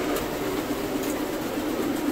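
Steady whirring machine noise with no rhythm or clear pitch.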